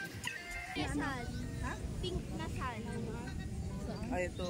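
Voices of several people with two loud falling calls, about a second in and again past the middle, over background music and a low steady rumble.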